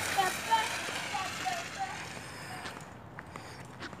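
Faint, distant children's voices calling out over a rushing noise that fades after about two seconds, then quieter street ambience.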